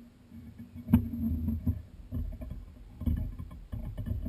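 Handling noises from hands at a fly-tying vise: scattered knocks and rubbing, with one sharp click about a second in, over a low steady hum.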